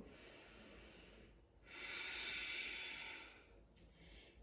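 A woman's slow, deep breath. The exhale is a long, steady hiss from about halfway through, lasting nearly two seconds.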